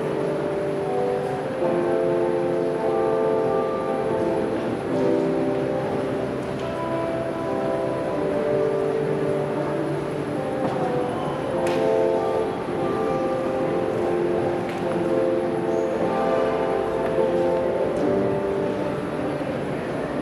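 Slow instrumental music of long held chords, organ-like, each chord changing every second or two.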